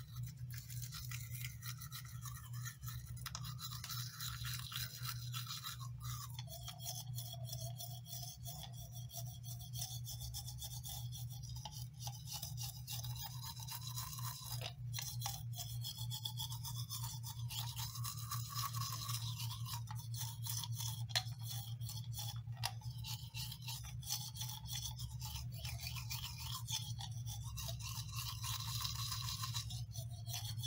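Manual toothbrush scrubbing teeth close to the microphone: a continuous scratchy brushing of bristles with no pauses, over a steady low hum.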